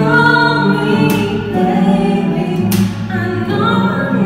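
A woman singing a slow pop ballad with a steel-string acoustic guitar accompanying her.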